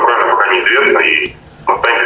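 Speech only: a voice speaking Russian, with a short pause about two-thirds of the way through.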